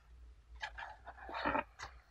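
Fingers brushing over a compressed ripe pu-erh tea cake and rustling its paper wrapper, in a few short scratchy bursts.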